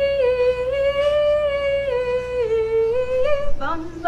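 A woman's voice singing wordless, mock-operatic long held high notes, drifting slowly up and down. Near the end she breaks to a lower note.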